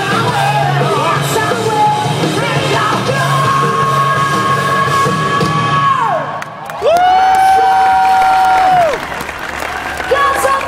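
Metal band playing live, the singer holding a long high note that slides down at its end, then a second long, lower note held loud for about two seconds, as the song comes to its close.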